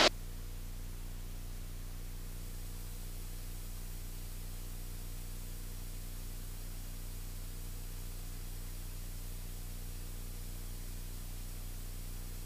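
Steady low drone with a faint hiss, unchanging throughout: the muffled engine and propeller noise of a single-engine piston airplane in flight, heard well below the level of the cockpit speech.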